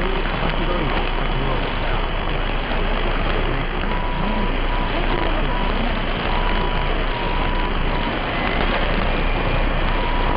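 Long-distance medium-wave AM reception of NHK Radio 2 on 747 kHz through a software-defined receiver: a loud, steady hiss of static with a faint Japanese voice buried beneath it. From about four seconds in, a short beep tone keeps switching on and off over the noise.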